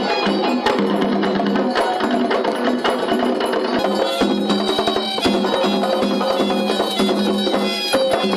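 Traditional West African drumming for a Zaouli mask dance: fast, dense drum strokes with a held high tone over them.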